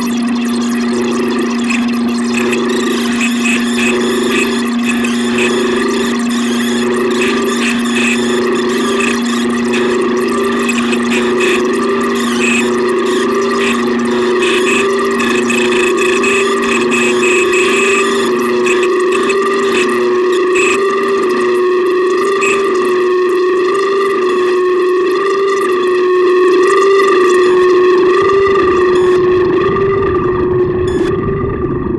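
Modular synthesizer drone from a Make Noise Tape and Microsound Machine and Strega: two held tones, the lower one fading out about ten seconds in, under a flickering, crackly texture that thins out later. Near the end the high texture drops away and a low rumble rises.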